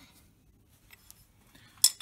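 A single sharp metallic clink near the end as a steel ring spanner meets a nut on the vise's cast-iron base, after a stretch that is mostly quiet apart from a few faint ticks.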